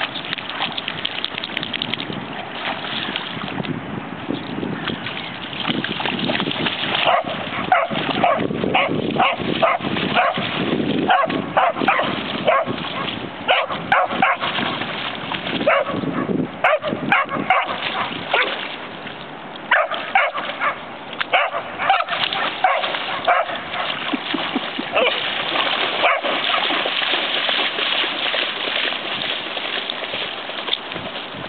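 A young Australian kelpie barking and yipping in many short, quick barks over a steady splashing of water, with the barks thickest from about seven seconds in until a few seconds before the end.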